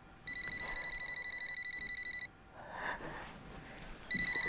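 Mobile phone ringtone: a rapid electronic trill, one ring about two seconds long starting just after the beginning, a pause, then the next ring starting near the end.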